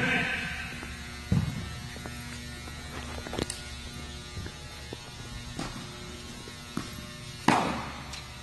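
Tennis balls struck with rackets in a rally, a sharp hit roughly every two seconds, the loudest near the end, each with a short echo, over a steady electrical hum.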